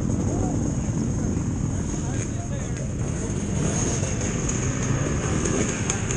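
Dirt bike engine running at low revs while the bike rolls slowly, with a steady high whine above it.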